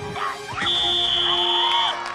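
A referee's whistle gives one long, high, steady blast that starts about half a second in and lasts over a second, over music and excited voices.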